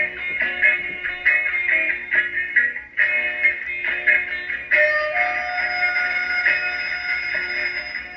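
Background-music clip number 3 from a CB radio caller box, sent out through a Stryker SR-955HP CB radio while it transmits. The tune sounds thin and narrow-band, and it changes about five seconds in.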